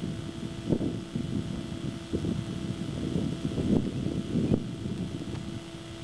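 Wind buffeting the microphone, an uneven low rumble that rises and falls in gusts, with a steady low hum underneath.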